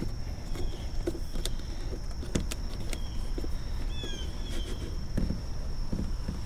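Light, scattered clicks of hands pressing a wire into a car's rubber door seal and plastic trim, over a steady high tone. A short falling bird chirp comes about four seconds in.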